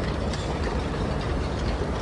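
Harbour ambience: a steady low mechanical rumble with a few faint light ticks.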